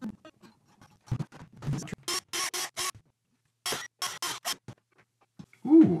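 Strings of an unamplified 1965 Fender Jazzmaster electric guitar strummed in two quick groups of about four strokes, after a few light clicks. The strumming is a check of the string action after a shim has been added under the neck.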